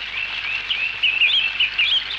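Birds chirping: a fast run of short, warbling twitters that grows louder about a second in, over a steady hiss.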